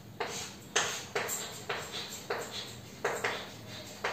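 Chalk writing on a blackboard: a string of irregular taps and short scratching strokes, about seven in four seconds.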